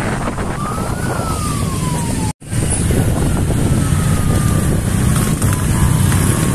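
Motorcycle convoy engines running together with heavy low rumble, with a siren wailing over it, its pitch rising and then falling slowly. The sound breaks off for an instant about two seconds in.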